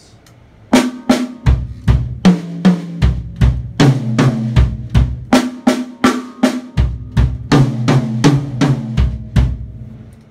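Acoustic drum kit played in a fast, even pattern of 32nd notes: pairs of hand strokes on the drums alternate with pairs of bass drum kicks. The pattern starts just under a second in, moves between drums of different pitch, and stops just before the end.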